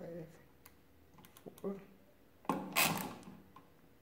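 Setting levers on the pinwheels of a 1920s Rapid pinwheel calculator being moved with a finger, clicking through their detents as a number is entered. A louder, noisier stroke comes about two and a half seconds in.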